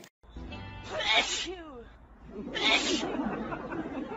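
Two sneezes about a second and a half apart, over a low steady hum.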